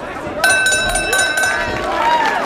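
Boxing ring bell ringing, struck rapidly for about a second starting about half a second in, signalling the end of a round, over crowd voices.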